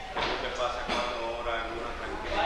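Speech only: a man talking in Spanish.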